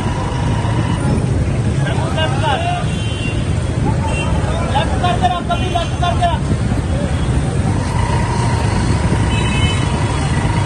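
Vehicle engine and street traffic rumbling steadily, with voices calling out a couple of times and a long held tone near the end.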